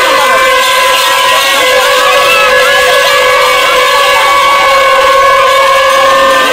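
A horn held on one steady note, with a crowd of voices singing and shouting over it.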